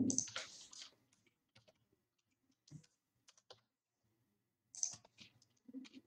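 Computer keyboard typing: scattered keystrokes in short clusters, with the loudest burst right at the start and a pause of about a second before the last cluster.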